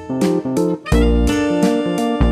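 Background instrumental music: plucked guitar notes over repeated bass notes.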